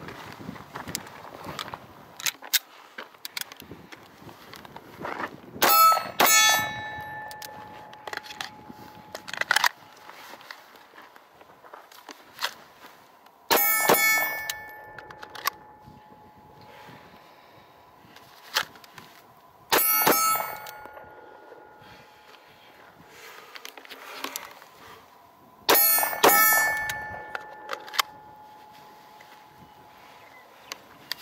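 Sig Sauer P226 9mm pistol fired in four short strings of one or two shots, about six seconds apart, each followed by hit steel targets ringing for two to three seconds. Smaller clicks and knocks fall between the strings.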